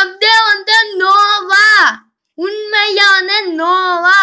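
A child's high voice held on one nearly steady note, like a sung drone, in two long stretches with a short break about halfway.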